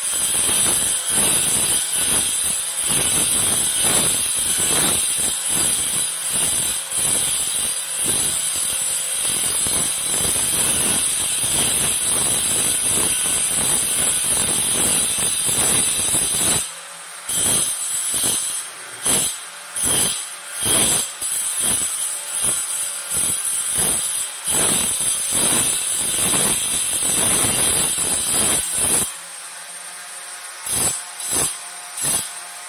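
Hand-held angle grinder cutting and grinding a stone strip: a steady high-pitched motor whine under a harsh grinding rasp. The grinding is continuous for about the first half, then breaks into short strokes about once a second as the disc is pressed on and lifted off. Near the end the grinder runs free, more quietly.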